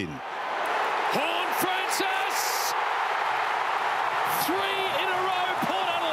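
Stadium crowd at an AFL match cheering a goal, a steady roar throughout, with a man's voice calling out over it twice.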